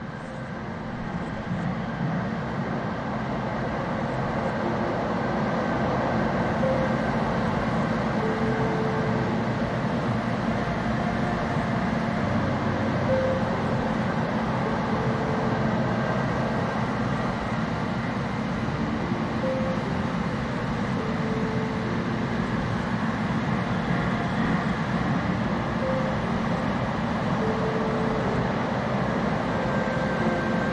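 Steady running rumble of a DART light-rail train heard from inside the car, fading in over the first few seconds and then holding level.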